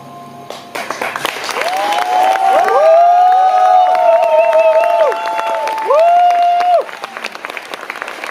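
Concert audience applauding and cheering as the last piano chord dies away. Clapping breaks out about a second in, with several long held cheers over it, and the applause thins near the end.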